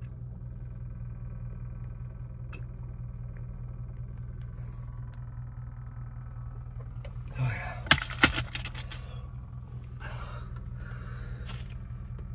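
A steady low hum inside a stopped car while a man gulps down an energy drink. About eight seconds in he splutters with two sharp, loud bursts as he chokes on it, then breathes hard.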